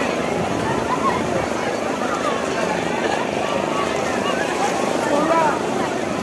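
Many people's voices mingling over a steady rush of surf.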